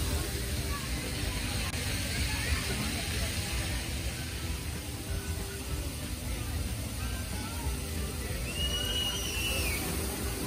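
Outdoor ambience: wind buffeting the microphone with a low, uneven rumble, over distant crowd chatter and faint music. A short high-pitched call rises and falls near the end.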